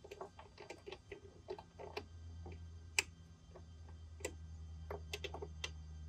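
Irregular light metallic clicks and ticks of a hand tool turning a threaded end cap down into the trim cylinder of a Yamaha 115 hp outboard's power trim unit, as the cap is screwed in toward bottoming out. A low steady hum comes in about a second and a half in.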